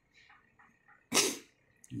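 A few faint clicks, then a short, loud, sneeze-like burst of breath from a person just past a second in. The clicks are likely multimeter probe tips touching a motherboard.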